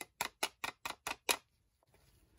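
Butane utility lighter's trigger clicked rapidly and repeatedly, seven sharp clicks about five a second, stopping about a second and a half in.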